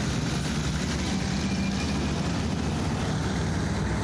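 Highway traffic passing close by: cars, a pickup and heavy trucks driving past with a continuous engine and tyre rumble.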